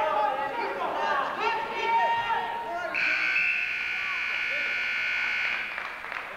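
Spectators' voices shouting, then a gym scoreboard buzzer sounding one steady tone for about two and a half seconds before cutting off.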